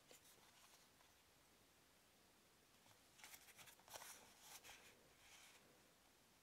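Faint rustling and scraping of a small plastic handheld keyboard being turned over in the fingers, with a brief scuff at the start and a cluster of soft scrapes about halfway through.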